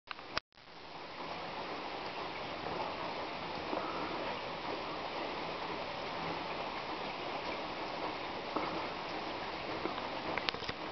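A sharp click right at the start, then a steady hiss of falling rain.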